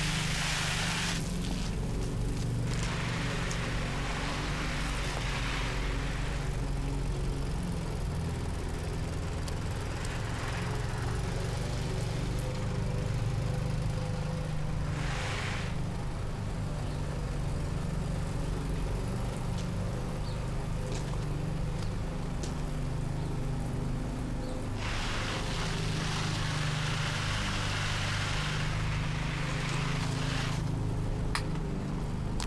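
A motor runs steadily with a low hum throughout. Swells of hissing noise rise and fade several times, longest near the end.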